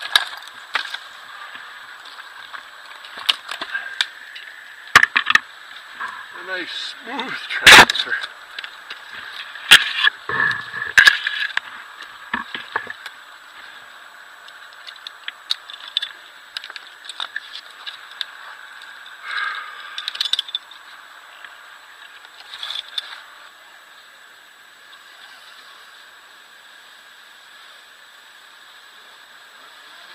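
Irregular sharp cracks and knocks of small fir branches snapping and climbing gear knocking against the trunk as a tree climber moves through the canopy. The loudest crack comes about eight seconds in. The sounds come thickly in the first half and only now and then after that.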